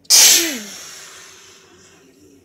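A person sneezing once, loudly and close to the microphone: a sudden sharp burst with a short falling voiced tail that dies away over about a second.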